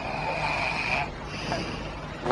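A man snoring with his nose held: one whistling snore lasting about a second, followed by a fainter, higher breath.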